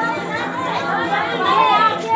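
A crowd of people chattering and calling out over one another, with some music mixed in.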